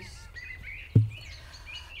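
Faint songbird chirps and short warbling phrases, with one short low thump about a second in.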